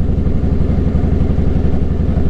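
Motorcycle engine idling steadily, with an even, rapid pulsing beat.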